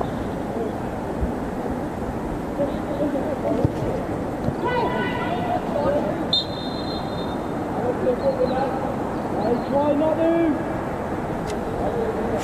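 Players' distant shouts on an open football pitch, with a short, sharp referee's whistle blast about six seconds in that stops play for a free kick.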